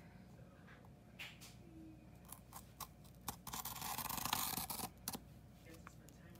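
A ceramic-tipped slicing pen is drawn across the opaque paper cover of a diamond-painting canvas, making a scratchy scrape of about two seconds after a few light ticks. Pressed lightly, the pen perforates the cover paper rather than cutting it through.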